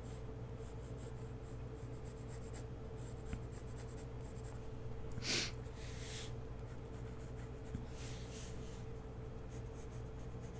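Coloured pencil sketching on paper: light, intermittent scratchy strokes, with one louder hiss about five seconds in, over a steady low hum.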